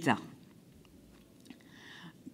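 A spoken word trails off, then a pause of quiet room tone with a few faint clicks, one about one and a half seconds in.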